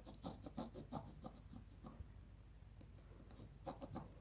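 Pencil scratching on paper as a curved line is drawn along a clear plastic curved ruler. It comes as a quick run of short, faint strokes for about the first second and a half, eases off, then a few more strokes come near the end.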